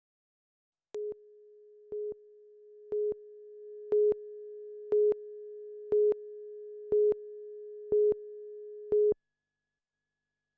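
Countdown leader on a broadcast news tape: a steady pure tone with a louder beep of the same pitch once a second, nine beeps in all. The first two beeps are quieter and the rest louder, and the tone cuts off suddenly near the end.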